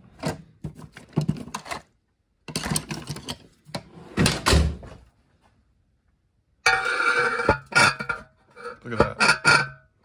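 Hand tools clattering and knocking as a screwdriver is picked out of a cluttered tool drawer. About two-thirds of the way through, a long screwdriver scraping and rattling inside a fuel tank's filler neck, with some metallic ringing, breaking loose the crud caked in the bottom of the tank.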